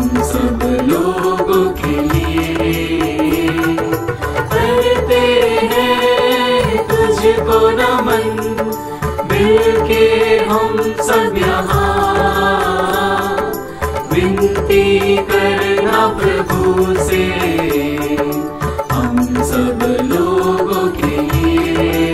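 Hindi devotional hymn music to Saint Clare, a melody of long held notes that carries on without a break.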